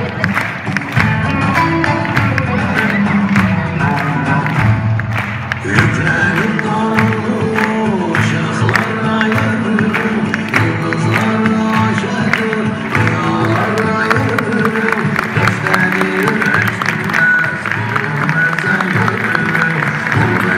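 Music playing loudly with many people clapping along, mixed with audience applause.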